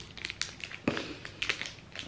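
Crinkling and rustling of small plastic jewelry packaging being handled, made of scattered light crackles, with one sharper click just under a second in.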